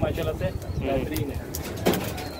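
Bird calls and low speech, with a single sharp click just before the end.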